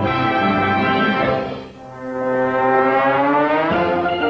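Orchestral cartoon score led by brass. The music dips briefly just before the halfway mark, then a long held chord swells and bends slightly upward in pitch.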